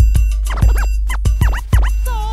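Hip hop beat with turntable scratching: quick back-and-forth record scratches sweep up and down in pitch in two runs, about half a second and a second and a half in, over hard drum hits and deep bass.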